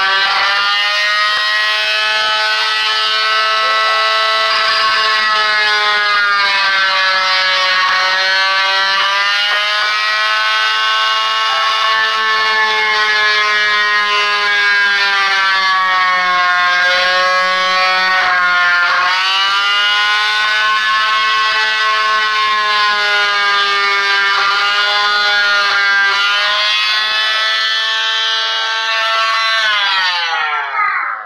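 Corded oscillating multi-tool running continuously with a high whine as its blade cuts into the wooden wing's plywood and wood, the pitch sagging and recovering several times as the blade bites under load.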